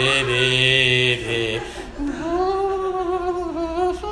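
A man singing a short, unaccompanied snatch of a tune in drawn-out notes: two shorter notes, then one long, slightly wavering note held for about two seconds.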